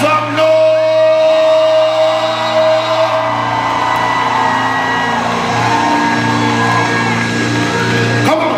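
Gospel band's keyboard holding long sustained chords over a steady low bass note, with whoops and shouted vocal calls sliding over it.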